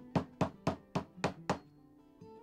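A hammer tapping small nails through sheet metal into a wooden fish form: six quick, evenly spaced strikes, about four a second, that stop about a second and a half in. Soft acoustic guitar music plays underneath.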